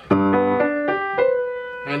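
Acoustic grand piano playing a short phrase moderately loud (mezzo forte). Both hands strike notes that change every few tenths of a second, and the last note rings on for most of a second.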